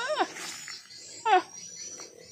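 Two short, high-pitched cries, each falling in pitch, about a second apart.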